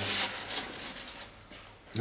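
A short rubbing, scraping noise from a foam model jet's airframe as it is handled and turned over in the hands. It is loudest right at the start and fades out within about a second.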